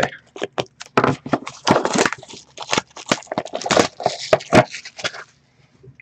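Hands handling and opening a cardboard hockey card hobby box: a quick run of rustling, scraping and clicking that stops about five seconds in.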